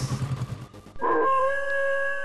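Eerie film-score music: a pulsing beat fades out, then about a second in a high, wailing sustained tone comes in suddenly with a short downward slide and holds steady, howl-like.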